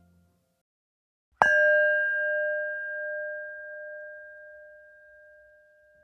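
A small metal bell struck once about a second and a half in, its clear tone ringing on and slowly fading away over about five seconds.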